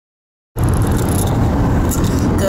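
Road noise inside a moving car's cabin: a steady low rumble of engine and tyres at highway speed, cutting in suddenly about half a second in.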